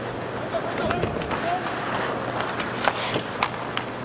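Ice hockey game audio: a steady murmur of the arena crowd with skates scraping on the ice and sharp clicks of sticks and puck scattered throughout, the loudest at the very end.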